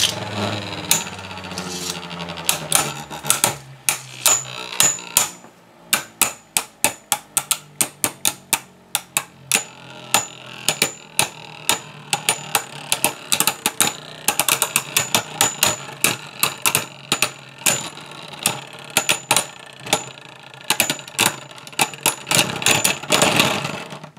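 Two Hasbro Beyblade Burst tops, Kerbeus K2 and Yegdrion Y2, spinning in a plastic Beystadium and knocking together again and again with sharp clacks. A low whir from the spin fades over the first few seconds. The tops run down to a stop in a close round.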